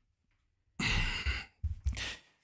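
A man's breathy sigh into a close microphone, starting about a second in, followed by short breath sounds near the end.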